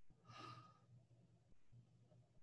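Near silence: faint room tone with a low hum, and one brief, faint breathy exhale about half a second in.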